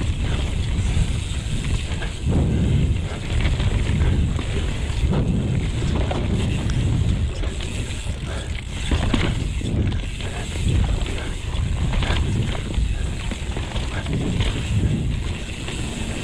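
Santa Cruz Megatower mountain bike riding fast down a dirt singletrack. Tyres rumble over the ground and the frame rattles and knocks over bumps, while wind buffets the camera microphone in gusts every couple of seconds.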